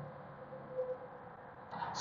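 Faint outdoor background noise in a pause between speech, with a brief faint tone about a second in.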